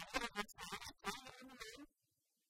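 A man and a woman laughing and talking together, stopping abruptly just before the end.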